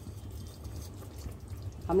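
Faint simmering and bubbling of egg masala gravy in a steel pot over a gas flame, over a steady low hum.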